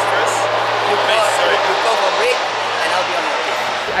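A man speaking outdoors over a steady background rush and a low hum, both of which cut off suddenly near the end.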